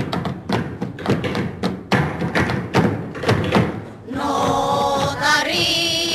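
Hands striking a wooden tabletop in a brisk, uneven rhythm, a flamenco-style beat. About four seconds in, the knocking gives way to women singing a flamenco song.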